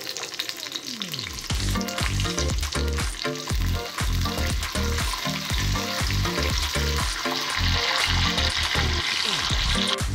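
Hot oil sizzling in an aluminium kadai as curry leaves and dried red chillies fry for a tempering, with a metal spoon stirring them. The sizzle grows stronger in the second half.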